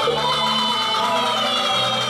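Beiguan ensemble music: a high melody line that slides and wavers in pitch, held over steady lower notes.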